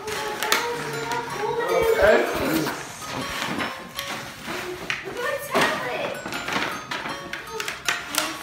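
People talking indistinctly over background music, with a few brief rustles and knocks of handling noise.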